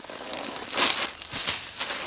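Dry rustling and crunching, as of dry leaves and wood-chip litter being stirred, with uneven crackles that are loudest a little under a second in and again around one and a half seconds in.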